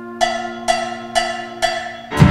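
A small live ensemble holding a sustained chord, with four evenly spaced, ringing percussive strikes about half a second apart on top.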